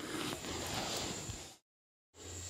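Faint room noise with a low hum, which drops to dead silence after about a second and a half.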